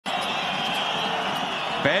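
Steady crowd noise in a basketball arena during live play, with the ball bouncing on the hardwood court. A commentator's voice comes in near the end.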